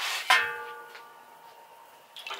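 Metal cookware knocked once about a third of a second in: a single clang that rings on in several steady tones and fades over a second or so.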